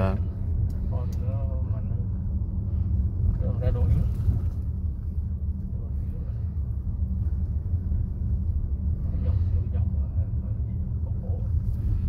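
Steady low rumble of road and engine noise inside the cabin of a Volkswagen Teramont SUV cruising at about 45 km/h.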